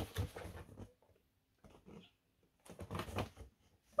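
Cardboard mailer box being handled as its flaps are folded open: a few short rustles and scrapes with quiet gaps between.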